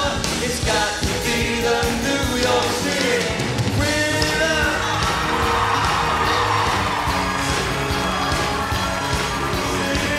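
Live pop band playing with a male lead singer.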